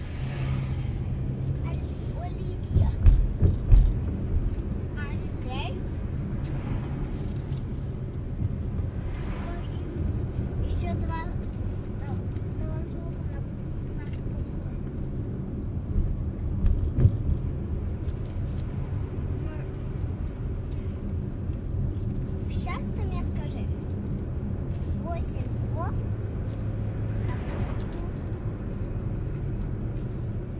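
Car driving, heard from inside the cabin: a steady low engine and tyre rumble, with a few louder low thumps about three seconds in and again around seventeen seconds.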